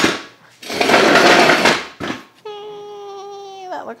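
Weight bench being adjusted into a decline: a short scrape, then a loud rasping scrape lasting about a second. It is followed by a woman's held, slightly falling 'hmm' lasting over a second.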